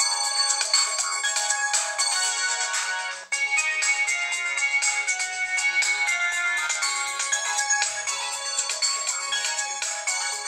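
Samsung Galaxy Ace 3 (GT-S7270) playing a melodic ringtone through its loudspeaker for a simulated incoming call set off by a fake-call app. The ringtone has no bass. It breaks off briefly about three seconds in, then carries on.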